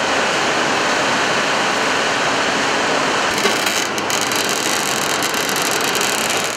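Tyre-recycling machinery running loud and steady as a scrap tyre is worked. From about halfway, a harsher grinding with irregular clicks joins in.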